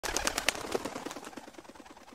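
A bird's wings flapping as it takes off, a rapid fluttering of about ten beats a second that fades away.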